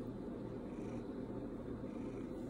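Pet cat purring steadily and low while its head is rubbed.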